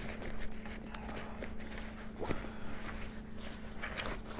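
Compression sack being opened and handled: soft fabric rustling with scattered small clicks and taps as its straps and lid are worked loose, over a faint steady hum.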